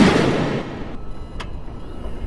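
A loud noisy burst that fades out within the first second, then a single sharp click about a second and a half in as the car's hood latch is released.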